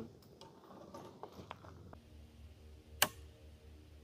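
A single sharp click about three seconds in, typical of an old side-by-side shotgun's action snapping on the primer of a 50 BMG round that fails to fire: a misfire. Fainter ticks come before it, and a faint steady hum runs from about halfway.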